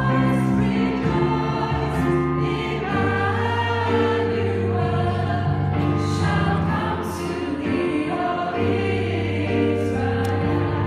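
Small mixed choir singing a Christmas carol in several parts, holding long sustained chords.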